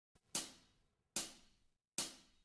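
Three light hi-hat taps, evenly spaced a little under a second apart, with silence between them: a drummer's count-in to the next song.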